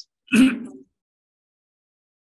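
A man clears his throat once, briefly, over a video-call microphone.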